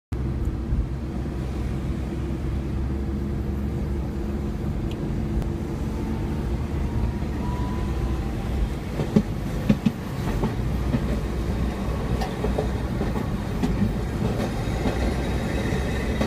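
Steady low running rumble of a moving vehicle, with a few sharp knocks about nine to ten seconds in.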